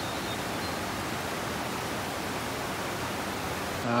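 Steady hiss of rain falling on forest bush, an even rushing noise with no distinct drops or breaks.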